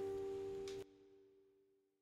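The song's final acoustic guitar chord ringing out and fading, with two faint clicks. It cuts off sharply just under a second in, leaving one faint tone that dies away to silence.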